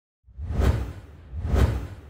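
Two whoosh sound effects about a second apart, each swelling and falling away over a deep bass rumble. The second trails off into a fading tail, as logo-intro sound design.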